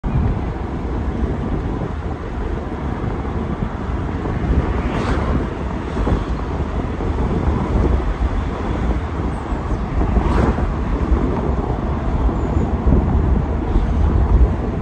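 Wind buffeting the microphone and road noise in an open-top convertible at driving speed, a steady rumbling rush. Two brief swells rise and fall about five seconds apart.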